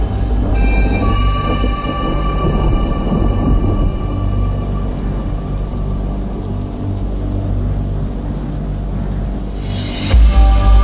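Electronic dance music breakdown: the kick drum drops out, leaving held synth tones over a rumbling, thunder-like noise, which ends in a short bright rush of noise.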